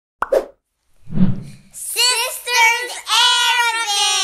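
A short pop, then a soft low thud about a second in, then a young child's high voice from about two seconds in, ending on a long, slowly falling note.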